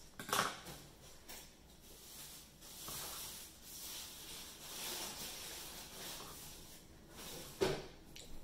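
Scissors set down on a tabletop with a sharp clack about half a second in, then soft rustling as yarn is handled and tied into a knot, with another short knock near the end.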